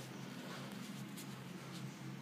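Quiet room tone: a faint, steady low hum with light hiss and no distinct handling sounds.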